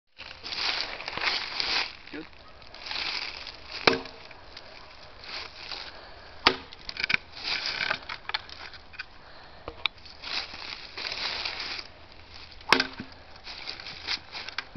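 A katana blade hacking into an upright wooden post in a destructive test of the sword: three sharp impacts, about four, six and a half, and thirteen seconds in, each with a brief ring, and a few lighter knocks. Between the strikes come bursts of rustling from dry leaves underfoot.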